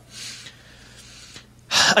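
A man's breathing in a pause of his talk: a faint breath just after the start, then a short, loud, sharp intake of breath near the end before he speaks again.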